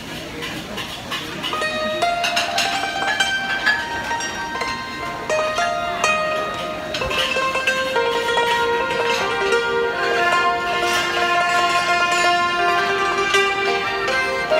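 Thai classical ensemble starting up: struck khim (Thai hammered dulcimer) notes come in about two seconds in, and a bowed Thai two-string fiddle (saw) joins with long held notes about seven seconds in.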